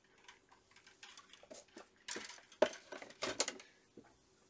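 Hands handling small items on a cutting mat at a modelling bench: irregular light clicks, taps and rustles, busiest from about two seconds in, over a faint steady hum.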